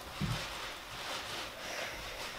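Quiet room noise with faint rustling from a seated person moving, and a soft low bump shortly after the start.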